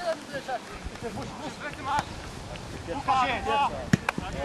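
Players' voices calling across a grass football pitch in a few short shouts, with a sharp thud of a football being kicked just before the end.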